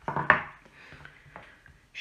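A white rolling pin set down on a wooden worktable: a brief knocking clatter near the start, the loudest sound here. It is followed by faint rubbing of hands on fondant on the table.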